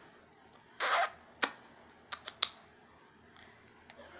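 Handheld camera handling noise: a short rustle about a second in, then a few light clicks, over quiet room tone.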